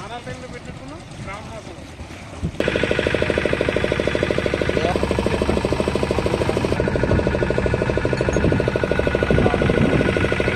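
Faint voices at first, then from about two and a half seconds in a boat engine running loud and steady with a fast, even pulse, voices heard faintly over it.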